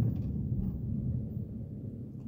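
Low rumble of a vehicle's engine and tyres heard inside the cabin while driving, slowly getting quieter.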